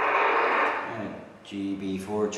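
Hiss and static from an amateur radio transceiver's speaker, confined to a narrow voice band, fading away about a second in. A man's voice starts near the end.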